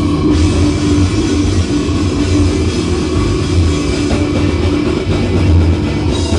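Metal band playing live: distorted electric guitars, bass and drum kit, loud and dense without a break.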